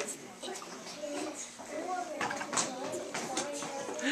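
Background speech: faint, indistinct voices of children and adults talking in a classroom.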